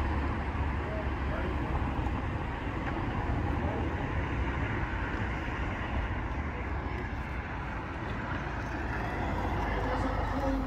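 Steady low outdoor rumble of city background noise, with faint voice-like sounds now and then.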